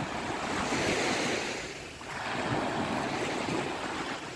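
Small waves breaking and washing up a sandy shore: a steady surf hiss that swells, eases off about halfway through, and builds again.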